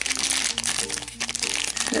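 Foil blind-bag packet crinkling as it is torn open and handled, with steady background music underneath.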